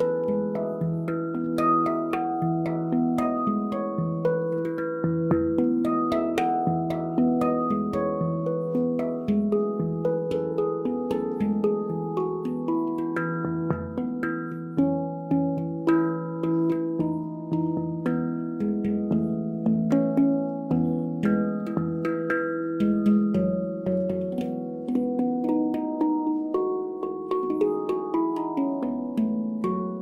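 Handpan, a steel hand-played instrument, played with the fingertips: a steady stream of struck notes that ring on and overlap, carrying a Christmas melody. The notes start to die away right at the end.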